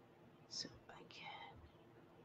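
Near silence broken by a woman's faint breath and a soft whispered sound about half a second to a second and a half in.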